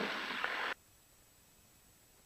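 Faint hiss of an open cockpit intercom microphone. It cuts off suddenly under a second in, leaving silence.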